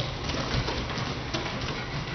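Bare feet running and landing on a studio floor in irregular taps, over a steady low hum.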